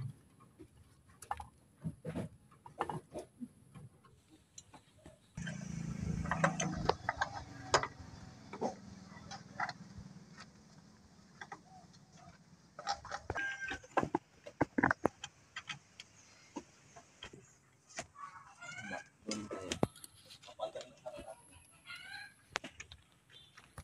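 Scattered light clicks and taps from hand work fitting a plastic signal lamp into the sheet-metal rear body of a jeep.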